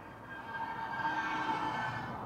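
A motor vehicle passing close by on the street, its pitched engine whine swelling from about half a second in, loudest around the middle, and fading near the end.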